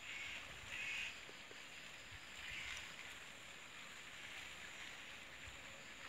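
Faint, distant bird calls: three short calls in the first three seconds, over a steady background hiss.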